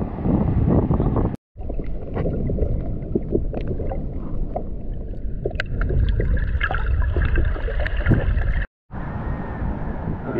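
Muffled underwater sound picked up by a camera in a waterproof housing: a low, steady wash of water noise with scattered sharp clicks and ticks. It drops out to silence twice, briefly, about a second and a half in and near the end.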